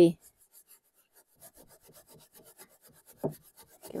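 Brush bristles scrubbing over gilded leaf on a painted surface in quick, faint strokes, brushing away the loose gold leaf where no adhesive was laid to reveal a stencilled design.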